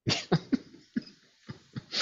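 A person laughing softly in several short breathy bursts, heard over a video-call audio feed.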